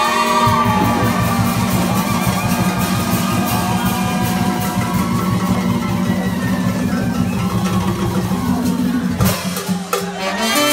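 Live comparsa band of brass and drums playing loud dance music: a held low horn line over a fast, steady drum beat, with a busier drum passage near the end.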